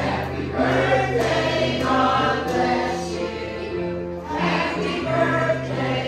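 Gospel music with a choir singing over held bass notes that change every second or so.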